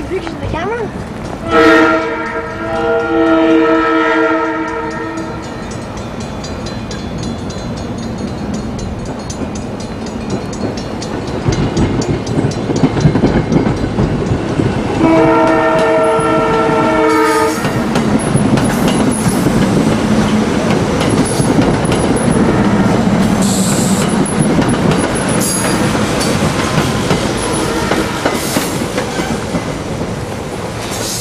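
SEPTA electric multiple-unit commuter train approaching on overhead-wire track. Its multi-tone horn blows about two seconds in and again about fifteen seconds in, over a building rumble and clatter of wheels on the rails as the train draws near.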